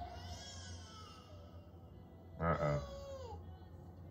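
Soundtrack of the animated episode playing: eerie music with gliding high tones. About two and a half seconds in, a short loud vocal cry falls in pitch.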